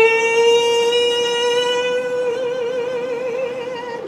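A woman's solo singing voice holding one long high note on the word "clear". The note is steady for about two seconds, then takes on a regular vibrato until the end.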